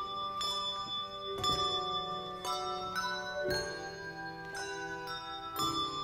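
Handbell choir ringing a piece on brass handbells: a new chord struck about once a second, each left to ring on under the next.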